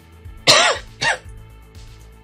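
A voice gives a short, harsh non-word exclamation with a rising-then-falling pitch, like an exasperated cough or scoff, about half a second in, then a briefer second one, over quiet background music.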